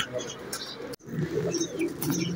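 Domestic pigeons cooing softly, low and murmuring, with a brief break about a second in.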